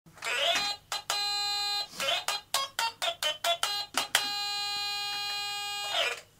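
Short music sting over the band's logo intro, with ringtone-like electronic tones: a rising swoop at the start and another about two seconds in, a run of quick sharp pitched hits, and two held bright tones. The last tone lasts nearly two seconds and cuts off suddenly.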